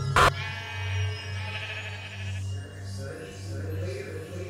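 A sharp hit just after the start, then a ram's long wavering bleat lasting about two seconds, over a steady low droning horror score.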